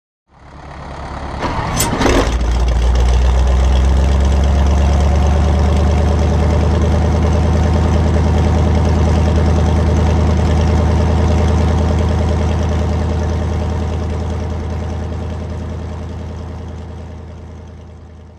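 Ford V8 aircraft engine starting, catching with a sharp burst about two seconds in, then idling at a steady, even low pitch that slowly fades out near the end.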